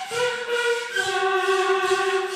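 Several overlapping held, wavering tones from a saxophone neck blown into a tube that is swung through the air, together with a prepared guitar. The lowest tone enters just after the start and drops a step in pitch about a second in.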